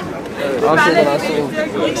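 Only speech: people chatting close to the microphone.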